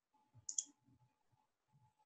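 A single computer mouse click, a quick double tick of press and release, about half a second in; otherwise near silence.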